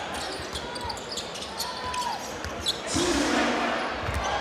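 Basketball game sound from an indoor court: a ball bouncing on the hardwood and short squeaks of shoes, over a steady crowd murmur in a large hall, with a brief shout near the end.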